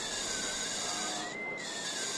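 Simulated surgical bone drill from a temporal bone dissection simulator: a thin, high whine over a steady hiss, its pitch wandering and rising to a peak about one and a half seconds in before dropping back.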